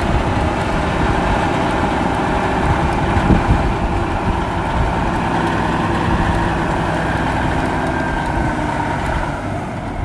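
Diesel engine of a 1975 Peterbilt 359 tractor running steadily as the truck moves slowly and turns, its pitch drifting slightly and easing off a little near the end.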